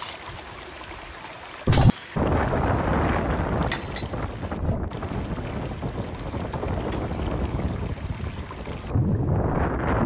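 Continuous rushing, sloshing water noise, with a short loud burst about two seconds in.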